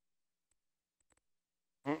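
Near silence, broken by a few faint clicks, then a short 'mm-mm' from a voice right at the end.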